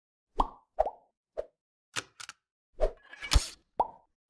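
Logo-intro sound effects: a quick series of short plopping pops, some with a brief pitched bloop, separated by silence. A longer, louder noisy burst comes about three seconds in.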